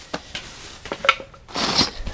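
Hands rummaging in a plastic storage tote: light rustling and small clicks, then a brief rattle of small hard pieces near the end that sounds like Legos.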